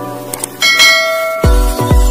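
Subscribe-animation sound effects: a short click, then a bright bell ding that rings for about a second. Electronic music with a heavy bass beat starts about one and a half seconds in.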